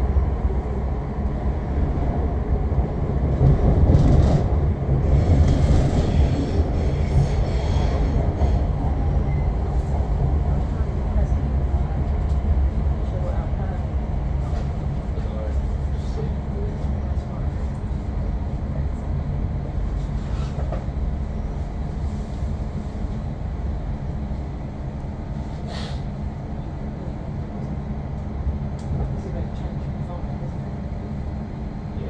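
Elizabeth line Class 345 train running through a tunnel, heard from inside the carriage: a steady low rumble of wheels on rail, louder for a few seconds early on with some sharp clicks, then slowly growing quieter.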